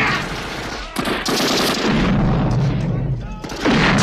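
Automatic-weapon fire from an action film's soundtrack: rapid machine-gun fire and gunshots, with loud volleys breaking out about a second in and again near the end.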